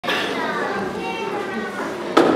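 Several people talking at once, children's voices among them, a steady mix of chatter.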